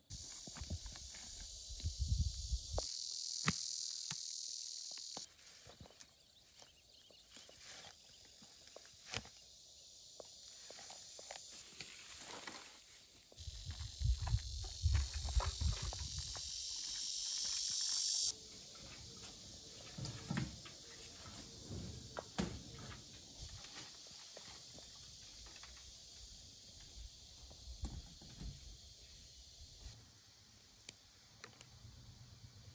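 Outdoor insect chorus, a shrill high buzz that is loudest in two stretches and cuts off suddenly about five seconds in and again past the middle. Under it run footsteps and rustling through dry brush, with scattered clicks and a low rumble at times.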